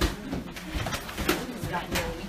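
Locker-room bustle: low, indistinct voices with a few sharp knocks and thuds, about three or four, in a small room.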